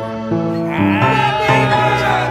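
Background music: held notes that change every half second or so, with a wavering, gliding melody line coming in about a second in.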